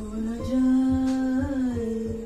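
A person humming one long held note that lifts slightly midway and settles back.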